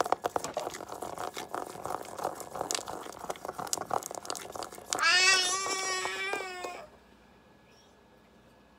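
Plastic buttons of a children's toy learning tablet clicked rapidly over and over for about five seconds. This is followed by a loud, held electronic note with a wavering pitch from the toy's speaker, lasting nearly two seconds before it cuts off.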